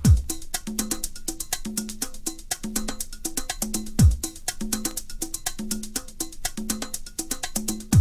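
Sparse percussion intro of a late-1980s Chicago house track: quick hi-hat-like ticks over a short two-note wood-block-like figure that repeats about once a second. A deep falling bass boom sounds at the start and again about four seconds in.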